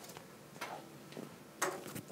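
A few faint clicks or taps over low room noise, the loudest a little before the end.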